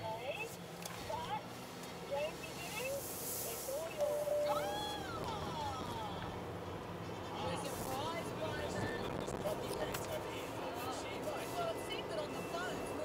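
A voice with a little music playing from the car radio, over the steady road noise of the car's cabin while driving.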